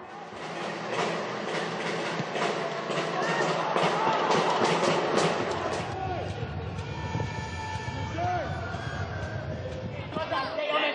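Football stadium crowd noise from the match broadcast: a steady din of the crowd with scattered shouts.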